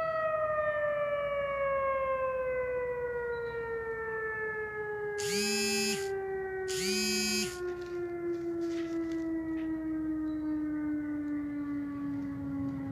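Outdoor warning siren winding down, its single steady tone sliding slowly and evenly lower in pitch. Two short, bright beeps about a second apart sound over it midway.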